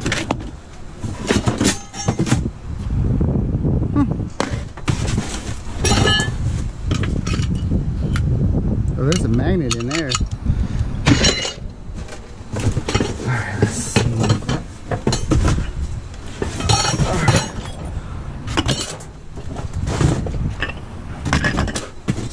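Rummaging by hand through cardboard boxes of metal parts and small motors: repeated clinks, knocks and cardboard scraping and rustling. Near the middle a voice briefly hums or mutters.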